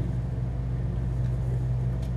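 Steady low hum of room tone, with no other event.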